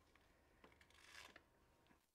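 Near silence, with faint rustling handling noise about a second in.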